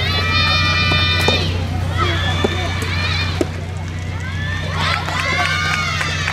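High-pitched voices shouting long, drawn-out calls, three in all, during a soft tennis rally, with a few sharp pops of racket striking the rubber ball between them. A steady low hum runs underneath.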